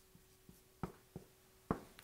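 Marker writing on a whiteboard: four short, faint ticks and taps of the tip, the sharpest near the end, over a faint steady hum.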